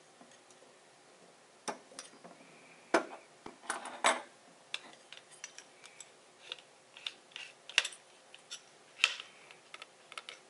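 Irregular clicks and clatters as small metal lens parts and jeweller's screwdrivers are handled and set down on a wooden bench, with the sharpest knocks about three, four, eight and nine seconds in.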